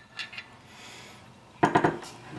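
Steel breech bolt of a first-generation Hi-Point 995 carbine being slid off the end of the barrel: a few faint metal clicks, then a short burst of sharper metallic clicks about three-quarters of the way through as it comes free.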